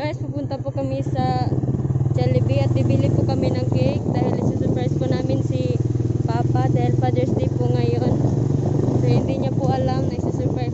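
Motorcycle engine running steadily on the move, with a person's voice over it.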